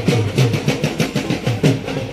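Drumming in a fast rhythm of about four strokes a second: deep strokes that slide down in pitch, with sharp slaps on top.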